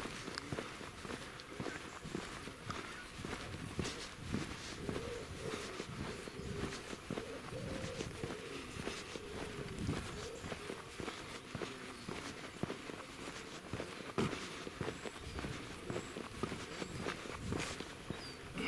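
Footsteps of a walker on a tarmac lane, steady walking steps close to the microphone.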